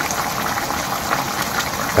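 Braised chicken with potatoes and carrots simmering in a frying pan on a gas stove: the sauce bubbles steadily with many small pops.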